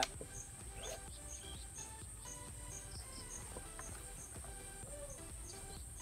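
Insects buzzing in a steady high-pitched chorus, with short chirps repeating about twice a second, over faint background music.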